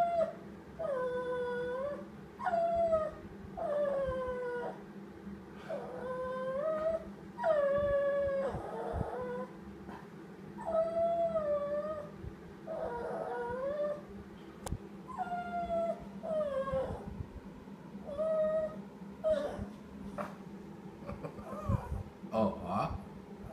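Small dog whining and howling in a long series of drawn-out calls, each one sliding down in pitch and then holding, roughly one every one and a half to two seconds: a pretty sad song, whined over its lost ball.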